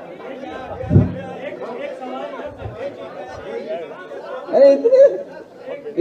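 Several voices talking over one another in a hall, with a low thump about a second in and one voice coming through louder near the end.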